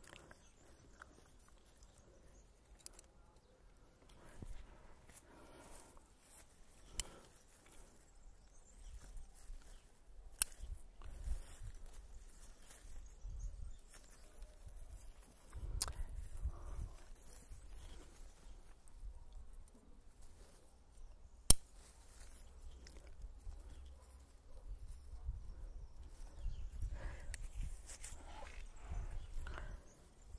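Bonsai scissors snipping twigs and shoots of a Japanese maple bonsai: a few sharp, isolated cuts spaced several seconds apart, the loudest about two-thirds of the way through, over a low rumble that comes and goes.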